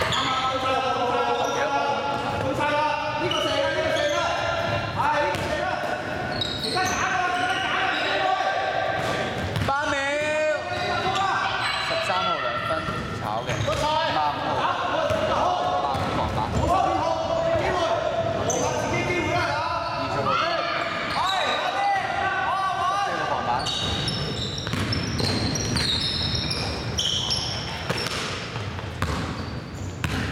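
Basketball bouncing on a hardwood gym floor during play, with players' voices calling out, all echoing in a large sports hall.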